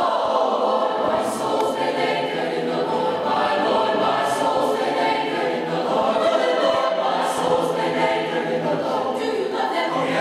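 A high school mixed-voice concert choir singing a spiritual in full sustained chords, with crisp sibilant consonants landing together every few seconds.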